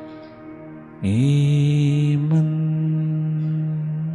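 Meditative mantra-style chanting: a man's low voice swoops up into a long, loud held note about a second in, over a steady sustained drone.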